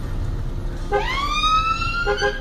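Electronic emergency-vehicle siren heard from inside a car: about a second in it starts and winds up in pitch, then holds a high steady note, over the low rumble of the car on the road.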